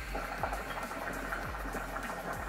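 Hookah water bubbling steadily as smoke is drawn through the hose in one long pull.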